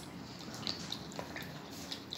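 Wooden craft stick stirring water and tempera paint in a plastic cup: a few faint, short ticks as the stick knocks the cup.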